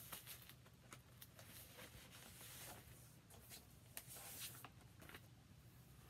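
Near silence, with faint rustles and a few soft taps of a vinyl LP being handled and drawn out of its sleeve.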